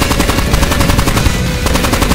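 A machine gun firing a long continuous burst of rapid, evenly spaced shots.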